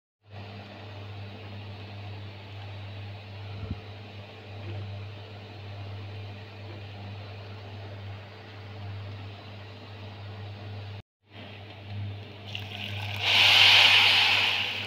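A steady low hum runs under the kitchen scene. Near the end a plastic food bag rustles loudly as it is handled over the pot of rice.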